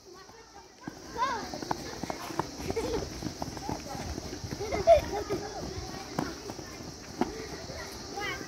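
Children running about on dry ground in a chasing game, footsteps scattered with short children's shouts and calls; the loudest is a brief call about five seconds in. It starts up about a second in, after a near-silent start.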